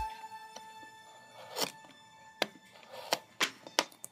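A utility-knife blade cutting through a headphone cable pressed against a tabletop: a handful of sharp clicks and knocks spread over the last two and a half seconds.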